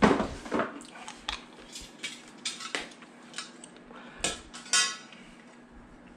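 Metal tools and small parts clinking and clattering as they are handled in a plastic tool case. A sharp clatter comes at the start and two louder clinks about four and five seconds in, the second ringing briefly.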